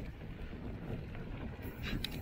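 Wind buffeting the microphone and mountain bike tyres rolling over a dirt trail, a steady low rumble, with a few short rattling clicks near the end.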